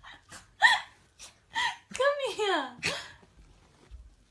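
A person talking to a puppy in a high, sing-song voice, with short sounds in the first second, then the pitch falling through a phrase about two seconds in, then a short laugh about three seconds in.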